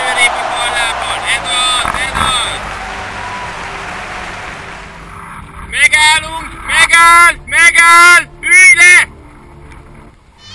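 Rushing wind and water noise on a camera held at the water's surface while a kiteboarder rides past throwing spray. Several loud, drawn-out vocal calls follow from about six seconds in.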